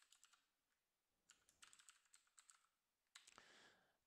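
Faint keystrokes on a computer keyboard, typing in two short runs, followed by a brief soft hiss near the end.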